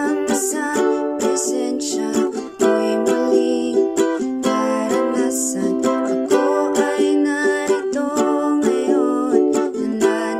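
Ukulele strummed in a steady strumming pattern, working through the verse chords G, D, E minor and C.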